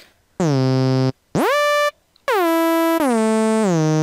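Native Instruments Massive software synthesizer playing a bright, buzzy lead patch with portamento glide: a short steady low note, then one that sweeps steeply up in pitch, then a held line that slides down from note to note in steps as new notes are played legato.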